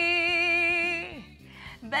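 A woman singing solo, holding a long note with vibrato that falls away about a second in; after a brief breath the next phrase begins near the end.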